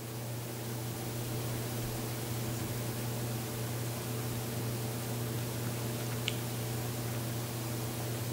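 Steady room noise: an even hiss over a constant low hum, with a faint click about six seconds in.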